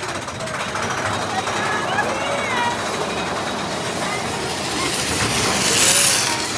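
Big Thunder Mountain Railroad mine-train roller coaster running along its track, a steady loud rumble that swells near the end, with riders' voices calling out over it.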